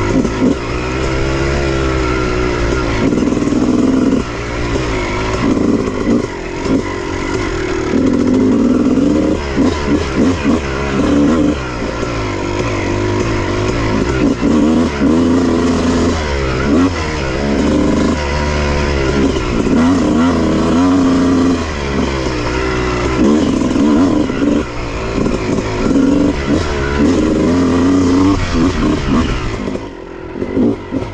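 Honda CR250 two-stroke single-cylinder dirt bike engine under way, revving up and dropping back again and again as the throttle is opened and closed. Its pitch rises on each pull, with short dips in loudness where the throttle is shut.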